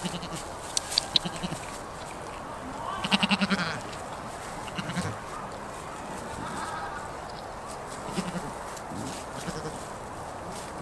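A goat bleats once with a wavering, pulsing call about three seconds in, and gives a shorter, fainter call near the end. Between the calls, goats grazing frosty grass make sharp clicks and rustles as they tear at it.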